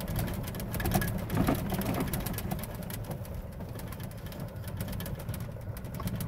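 Golf cart driving across a grassy field: a steady low rumble from the cart and its tyres, with frequent small knocks and rattles.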